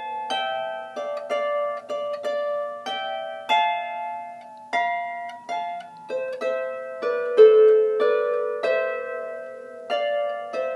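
Harp playing a slow melody of plucked notes, about one to two a second, each ringing on, over a low left-hand note that sounds throughout.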